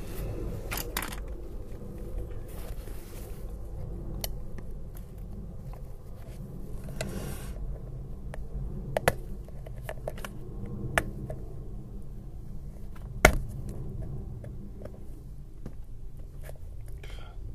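Close-miked handling of painting materials: scattered small clicks and taps from a paint bottle and paintbrush on a sketchpad, with a couple of brief soft brush-on-paper scrapes. One sharp click about thirteen seconds in is the loudest, over a steady low hum.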